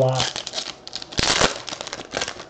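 Foil wrapper of a baseball card pack being torn open and crinkled by hand, with the loudest tear a little over a second in.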